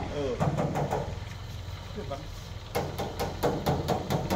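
Toyota Kijang Grand Extra's 1.8-litre engine idling steadily. A fast, regular ticking, about six or seven a second, comes in a little before three seconds in.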